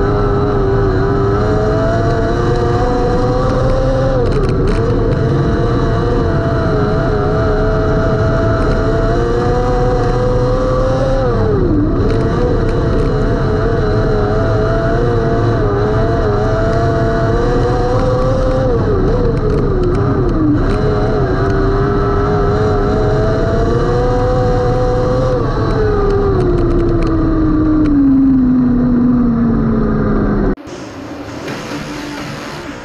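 Open-wheel non-wing dirt-track race car's engine heard from the cockpit, running hard with its pitch dipping sharply twice as the driver lifts for corners. Over the last few seconds the pitch falls steadily as the car slows.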